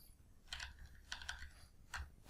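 Faint computer keyboard typing: a few scattered keystrokes in short clusters.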